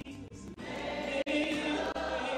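Church choir singing a gospel song, a woman's lead voice on a microphone over the group. The singing thins just after the start and breaks off for an instant a little past the middle.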